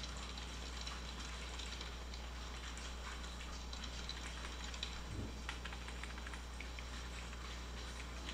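Faint computer keyboard typing: scattered, irregular key clicks over a steady low electrical hum.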